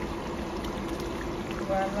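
Rice cooking in tomato-based sauce in a pot on an induction hob, simmering gently on low heat with a steady hiss and a few faint pops.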